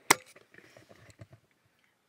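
A single sharp knock right at the start, followed by faint rustling and small ticks that die away about a second and a half in.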